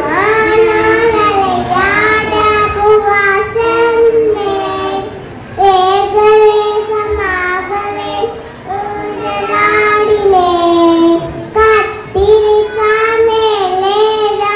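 A group of young children singing a song together in unison, in phrases of a few seconds with short breaks between them, amplified through stage microphones.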